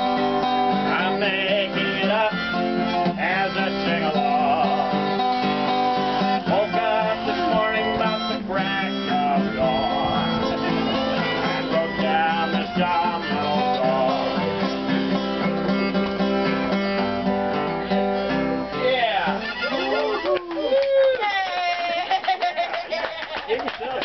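Acoustic guitar strummed under a group of harmonicas blowing and drawing held chords, a loose, informal jam. Near the end the playing breaks up into a few sliding, wavering notes.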